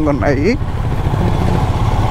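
Royal Enfield Himalayan's single-cylinder engine running steadily at low road speed, heard from the saddle as an even low hum under the ride noise. A man's voice trails off about half a second in.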